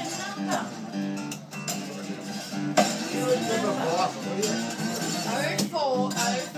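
Cole Clark acoustic guitar played lap-style with an empty schooner beer glass as a slide: plucked notes sliding in pitch over low strings that keep ringing.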